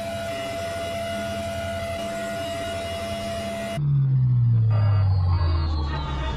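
A steady electronic hum with one held tone. About four seconds in it cuts off abruptly and a louder electronic sound begins, its whole pitch gliding steadily downward.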